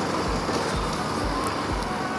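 Bajaj Pulsar NS200's single-cylinder engine running at town speed on the move, under a steady rush of wind on the microphone, with a low pulsing rumble beneath.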